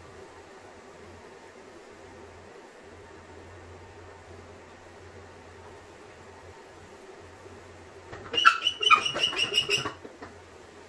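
A hand pump-up sprayer being pumped to build pressure, a rapid run of high squeaks lasting almost two seconds near the end. Before that there is only a faint steady hum.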